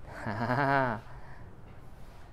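A man's voice holding one drawn-out, wavering syllable for just under a second, near the start.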